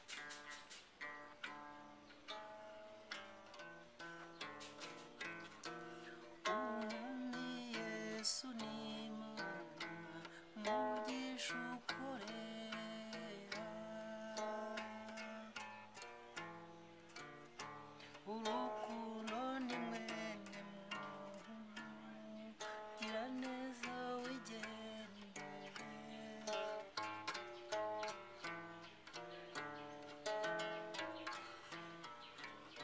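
Inanga, a Rwandan trough zither, plucked in a quick, continuous run of repeating notes. From about six seconds in, a voice sings along, its notes sliding and wavering.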